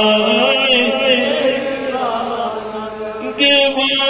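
A man's voice chanting a Kashmiri naat (devotional poem in praise of the Prophet) into a microphone, in long held, wavering melodic notes. The voice softens in the middle and comes back strongly about three and a half seconds in.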